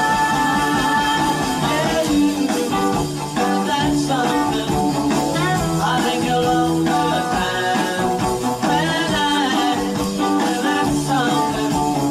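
Live rock-and-roll band playing: electric guitars, electric bass and drums, with sung vocals over them.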